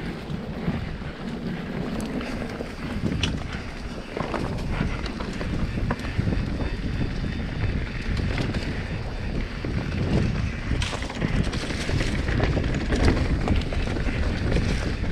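Santa Cruz Nomad mountain bike riding fast down a dirt singletrack: wind buffeting the camera microphone over the rumble of tyres on hardpack dirt and leaf litter, with scattered clicks and rattles from the bike over bumps. It grows louder about four seconds in as speed builds.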